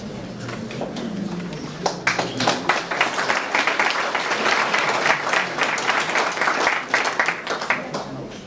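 Audience applauding, starting about two seconds in and carrying on until near the end.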